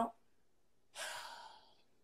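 A woman sighs: one breathy exhale about halfway through, fading out over roughly half a second.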